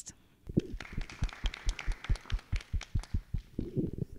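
A small group of people clapping, about five claps a second, dying away near the end.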